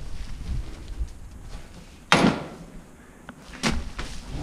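Mountain bike ridden over a heap of manure and straw, picked up by a camera on the handlebar: a low rumble from the bike with two sharp knocks, one about two seconds in and one near the end, as it jolts over the heap.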